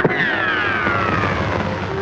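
A sharp crack, then one long falling whistle-like glide over orchestral soundtrack music: a comic sound effect for a missed golf swing.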